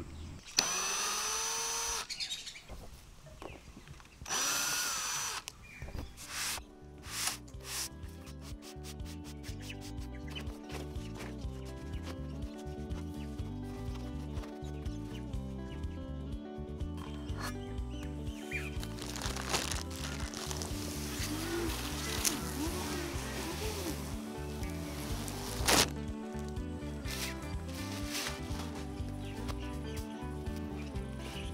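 A cordless drill driver runs in two short high-pitched whirring bursts near the start, about a second and a half and then a second long, backing out the small stainless steel screws that hold the skin's spline in the awning roller tube. Background music with a steady beat fills the rest.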